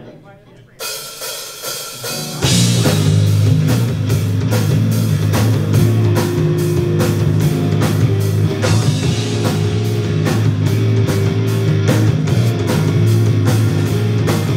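Live rock band starting a song: after a quiet opening and a first instrument sounding about a second in, the drum kit and electric guitars come in together loudly about two seconds later and play on with a steady beat.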